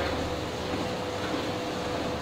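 Treadmill running: a steady mechanical hum with a faint steady whine.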